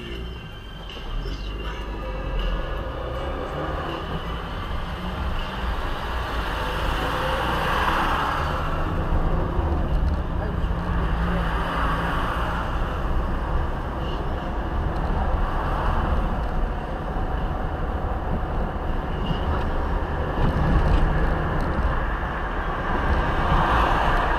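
Interior sound of a car driving in city traffic: a low engine and tyre rumble that grows louder over the first few seconds as the car speeds up from a crawl, then holds steady.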